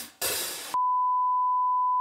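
A last crash of the closing drum music, then under a second in a steady single-pitch test-tone beep starts abruptly and holds: the bars-and-tone reference tone.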